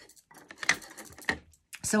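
Faint jingling and light clicks of metal bracelets and a wristwatch band as the hands move, dabbing a blending brush on an ink pad.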